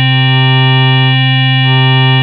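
A single sustained synthesizer note at one steady pitch: an Ableton Operator sine wave driven through Saturator's Waveshaper, which makes it bright and buzzy with many added harmonics. Some of the middle harmonics swell and fade as the waveshaper's Depth control is turned up, blending a lower sine component back into the sound.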